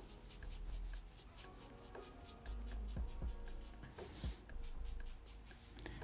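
Marker pen scratching faintly across paper in quick short strokes, several a second, hatching lines, with a few soft low knocks of the hand or pen on the drawing surface.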